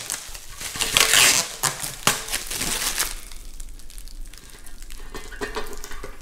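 Protective plastic film being peeled by hand off a corrugated metal raised-bed panel, crackling and crinkling in bursts; the film is stuck on tight. It is loudest about a second in and dies down to quieter handling after about three seconds.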